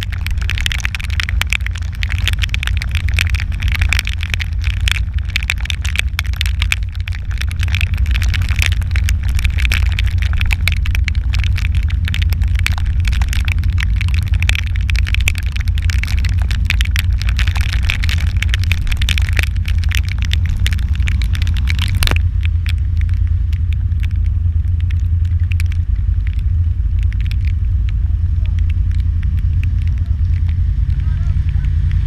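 Rapid crackling of raindrops hitting the camera over a loud, low, steady rumble; the crackling stops abruptly about 22 seconds in, leaving the rumble.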